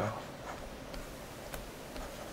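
A few faint clicks over low, steady background hiss, the sharpest about one and a half seconds in.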